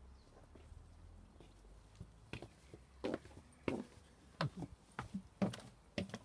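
Footsteps on hard garden paving and wooden decking: irregular steps that start about two seconds in and grow louder toward the end.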